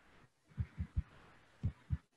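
Five soft, low thumps: three in quick succession about half a second in, then two more near the end.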